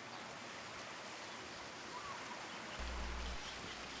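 Faint, steady wash of ocean surf breaking on a rock wall. A faint short chirp about halfway through and a brief low rumble near the end.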